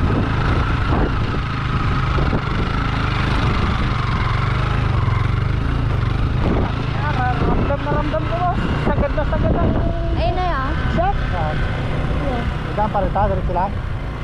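A motorcycle engine runs steadily under load as the bike rides a dirt trail, with wind rushing on the helmet-mounted microphone. From about halfway, a voice sings or hums a wavering tune over the engine.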